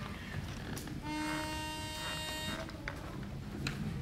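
A pitch pipe sounding one steady note for under two seconds, starting about a second in: the quartet's starting pitch before they sing. A couple of small knocks and low room noise around it.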